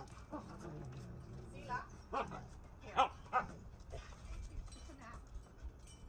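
A husky-type dog vocalising: a drawn-out call falling in pitch, then four short, sharp calls over about two seconds, the loudest about three seconds in.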